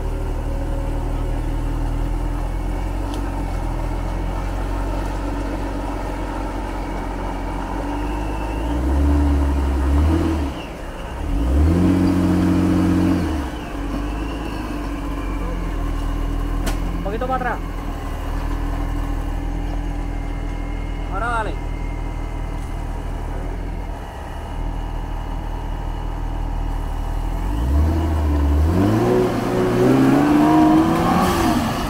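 Modified Jeep Wrangler's engine labouring at low revs while crawling through a deep mud rut. It is revved in short bursts about nine and twelve seconds in, and climbs in a rising rev near the end.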